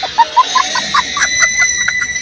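A rapid run of short hen-like clucks, about five a second, added as a comic sound effect over a steady high background tone.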